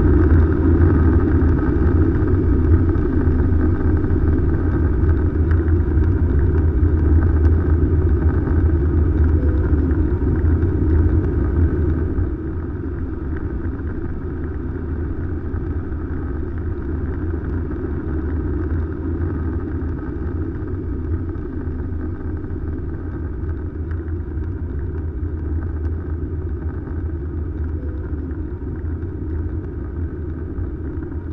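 Airbus A320 cabin noise at a window seat during takeoff and climb: the jet engines' steady low drone mixed with rushing air. About twelve seconds in, the sound drops to a quieter, duller steady drone.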